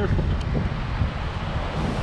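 Wind blowing across the microphone: a steady low rushing noise with no distinct events.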